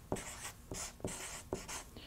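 Felt-tip marker writing on a sheet of paper, faint, in a series of short strokes as a word is written out.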